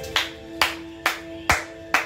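Five sharp hand claps, evenly spaced at a little over two a second, over music with a steady held chord.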